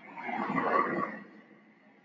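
An SUV passing close by on the street. The sound swells and fades away within about a second.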